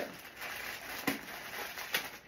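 Plastic packaging rustling and crinkling as it is unwrapped by hand from a small figure, with two light clicks, one about a second in and one near the end.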